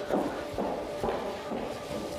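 Soft background music with a few footsteps on a hard floor.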